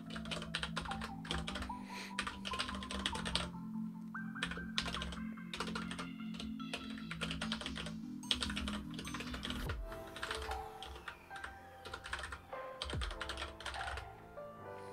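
Typing on a computer keyboard: irregular runs of quick keystrokes with short pauses between them. Background music with sustained notes plays underneath.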